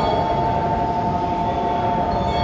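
JR East E233 series 3000 train's horn sounding one long, steady two-tone blast.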